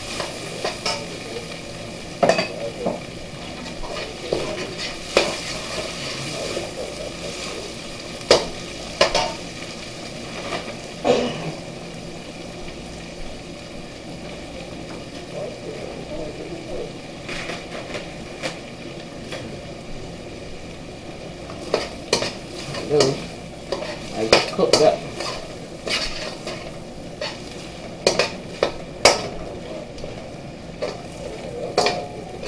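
Pork, onions and scallions sizzling in a hot stainless steel wok, stirred with a slotted metal spatula that scrapes and clacks against the pan. The clacks come in irregular clusters, busiest near the end.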